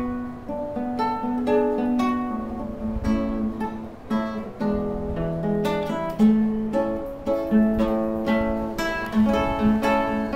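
Solo nylon-string classical guitar played fingerstyle: a melody of single plucked notes over a repeated low note.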